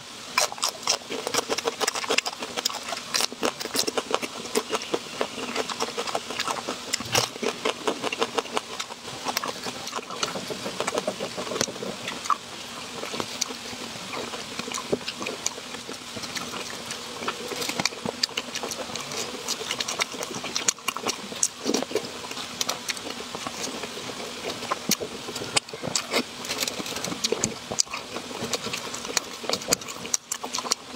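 Close-miked eating: biting and chewing raw green bell pepper and other fresh foods, a dense, uneven run of crisp crunches and clicks.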